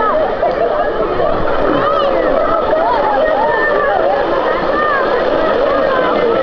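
Crowd of people around a pool talking and calling out at once, many voices overlapping, over a steady rushing noise.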